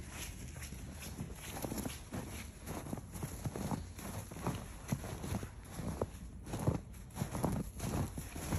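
Footsteps in snow, a run of short irregular steps about two or three a second.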